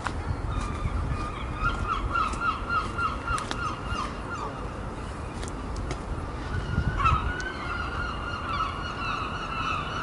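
Birds calling in quick runs of short, repeated notes, about four or five a second: one run from about one and a half to four seconds in, another from about seven seconds in. A low steady rumble lies beneath.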